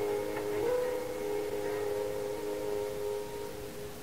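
Music: a sustained chord that shifts about half a second in, is held for about three seconds, then fades.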